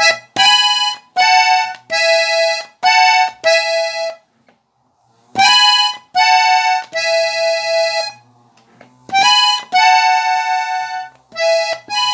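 Hohner Compadre three-row diatonic button accordion in E playing the song's instrumental interlude in the key of A: short phrases of held double notes on the treble buttons, broken by brief breaks and a pause of about a second a third of the way in.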